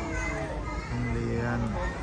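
Children playing and calling in a school playground in the background, with a steady low din underneath.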